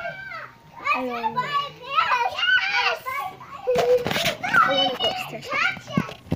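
A young child's voice talking and exclaiming in quick, pitch-sliding bursts, with a few short knocks from the tablet being handled.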